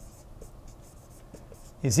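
Marker writing on a whiteboard: faint, short strokes of the tip against the board.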